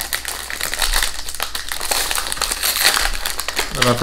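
Plastic wrapper of a biscuit package being opened and handled, crinkling and crackling throughout.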